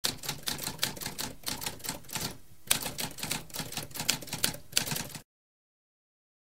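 Typewriter keys typing in quick strokes, several a second, with a short pause a little after two seconds; the typing stops about five seconds in.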